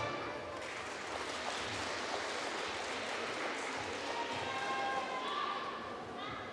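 Audience applauding in a large hall, a steady even clapping, with people's voices coming in during the second half.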